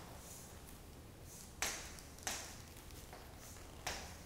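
Chalk writing on a chalkboard: three sharp taps as the chalk strikes the board, about a second and a half in, again just under a second later and just before the end, with fainter scratchy strokes between them.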